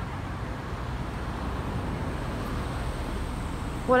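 Steady hum of road traffic with a low rumble underneath, swelling slightly in the middle.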